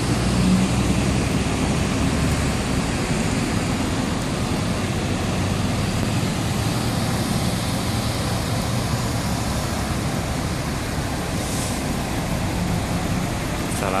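Steady road traffic: vehicle engines running on a busy road, a continuous low rumble.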